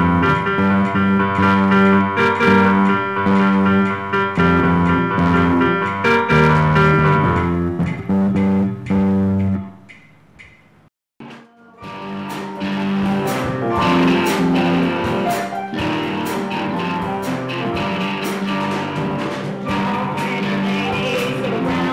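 A pupils' band playing riffs on bass guitar and keyboard in long held notes. About halfway through the music stops for about two seconds, then a fuller band take begins with guitar and a steady beat.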